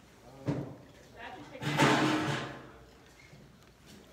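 Wordless voice sounds: a short one about half a second in, then a louder, longer, breathy one around two seconds in.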